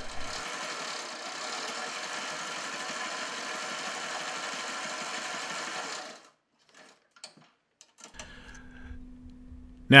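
Sailrite Ultrafeed LS-1 walking-foot sewing machine running steadily, sewing straight lock stitches through 1-inch polyester webbing to hold a buckle in place. It stops about six seconds in, followed by a few faint clicks.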